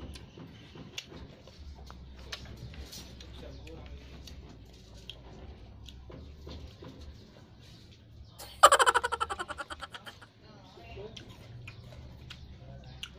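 Soft mouth clicks and smacks of someone chewing sour ceremai fruit (Otaheite gooseberries). About eight and a half seconds in comes a loud, sudden burst of rapid rattling pulses that fades over about a second and a half.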